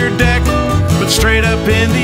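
Acoustic country band playing: a strummed acoustic guitar and a ukulele over the low notes of a washtub bass, with a melody that slides in pitch above them.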